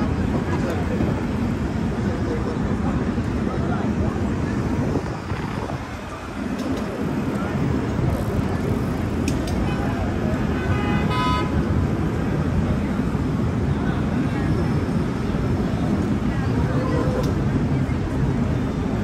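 Busy city street ambience: steady traffic rumble with passers-by talking, and a short car horn toot about eleven seconds in.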